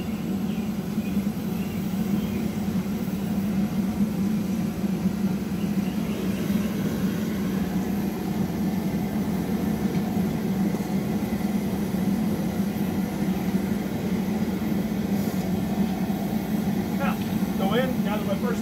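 Gas burner of a propane-fired glassblowing furnace running, a steady loud rushing noise with a low hum under it.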